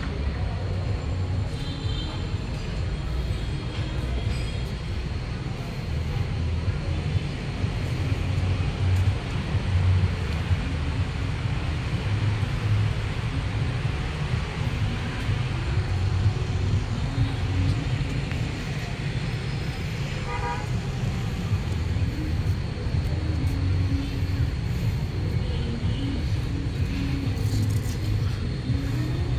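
Steady road traffic rumble from the street below, with occasional short vehicle-horn toots, the clearest about twenty seconds in.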